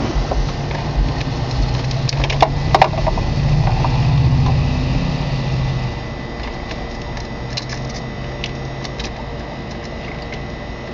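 Sharp clicks and knocks of a stepped-on electrical lead being handled and reconnected, with a cluster of clicks about two and a half seconds in. Under them runs a steady low hum that drops in level about six seconds in.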